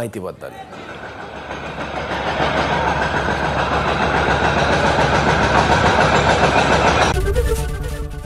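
Crowd of protesters shouting slogans together, a dense wash of voices that builds up over the first two or three seconds and stays loud. It cuts off abruptly about a second before the end, when a news channel's jingle starts.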